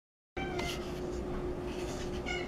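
Domestic cat giving a short meow about half a second in that dips slightly in pitch, over a steady low hum.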